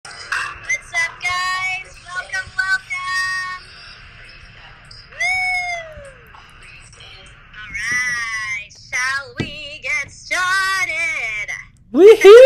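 A high-pitched voice singing or sing-song vocalising in short phrases that glide up and down in pitch, with pauses between them, about half a dozen phrases in all.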